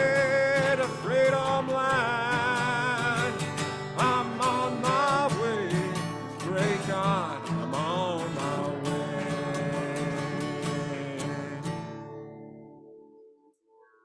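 Acoustic guitar strummed under drawn-out sung notes with vibrato, closing a slow folk song. The last chord rings on and fades away about 13 seconds in.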